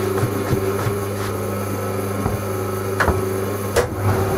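Servis Quartz Plus washing machine turning its drum to distribute the load before spin: a steady motor hum with about six sharp knocks, the loudest about three seconds in and near the end.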